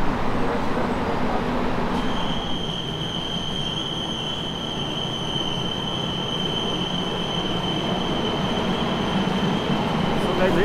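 Korail commuter train running along a station platform behind the platform screen doors: a steady rumble, with a steady high-pitched tone from the train coming in about two seconds in.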